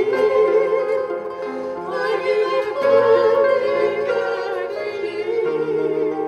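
Three women singing a Greek song together, holding long notes, with instrumental accompaniment.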